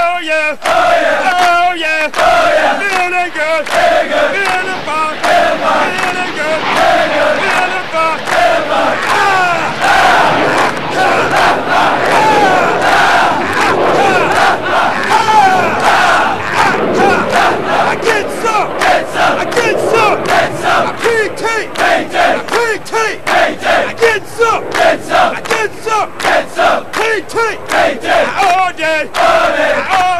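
A large group of Marine recruits chanting and shouting together in a loud, unbroken military cadence, the many voices overlapping. From about the middle on, a fast, regular beat runs under the chant.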